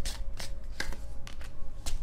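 A deck of tarot cards being shuffled by hand, with sharp card slaps about every half second.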